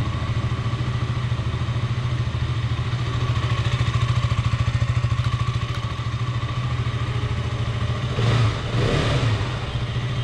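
KTM RC 200 BS6's single-cylinder 200 cc engine idling steadily with an even pulsing beat, heard through its underbelly exhaust. Near the end there are two brief louder bursts.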